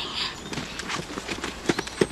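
Running footsteps on a dirt-and-grass field: a quick, uneven patter of soft footfalls.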